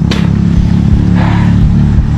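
A loud, steady low drone, with a short hissing rustle about a second in.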